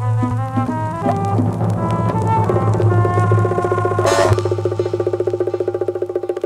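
Instrumental outro of a hip-hop track: a steady deep bass note under pitched instrument lines. The bass drops out about four seconds in, leaving a fast-pulsing tone.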